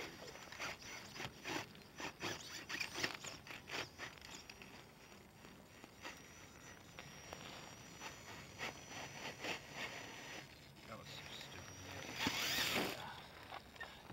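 An RC rock crawler clambering over boulders: scattered clicks and scrapes of its tyres and chassis on rock, with footsteps in dry pine needles. A louder rustle comes near the end.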